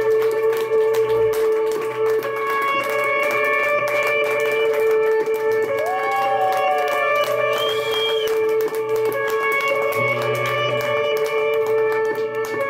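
Live band playing amplified electric guitars in long, droning held notes over an intermittent bass line. A guitar note bends up and slides back down about halfway through.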